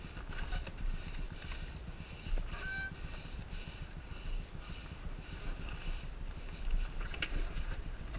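Dirt bike engine running at low revs as the bike rolls slowly down a rutted sandy trail, its sound pulsing about twice a second over a steady low rumble. A short click near the end.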